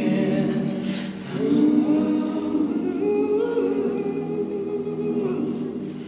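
A song with a sung vocal line of long held notes, with a short break in the singing about a second in.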